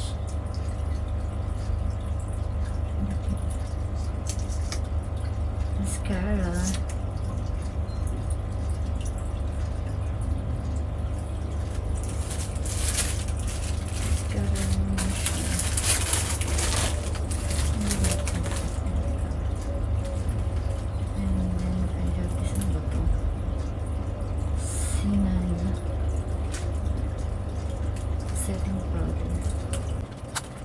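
Plastic packaging rustling and crinkling as items are handled and unwrapped, loudest in a stretch near the middle, over a steady low hum. A few short murmured vocal sounds come in between.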